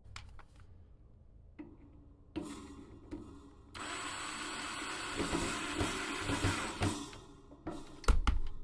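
Power drill driving a screw into a metal heater pole, its motor running steadily for about three seconds from midway, after a few light handling clicks.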